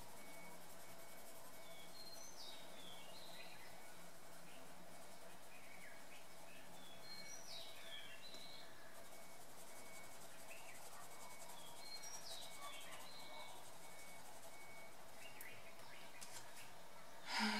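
Songbirds singing faintly, a short chirping phrase coming about every five seconds, over a low steady room hum.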